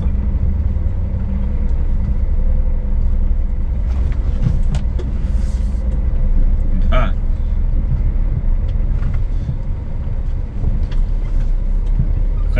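Scania S500 truck's diesel engine and road noise, heard from inside the cab as a steady low drone while the truck rolls slowly through a roundabout.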